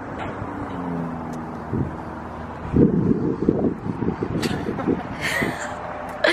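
Passing road traffic: a vehicle's engine hum with a slightly falling pitch, then a louder low rumble from about three to five seconds in.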